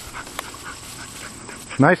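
Quiet outdoor field ambience with a faint, steady high-pitched whine and a single sharp click about half a second in, then a man's voice right at the end.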